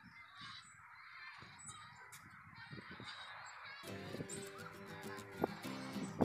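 Faint honking of waterfowl over outdoor background noise, with background music coming in about four seconds in.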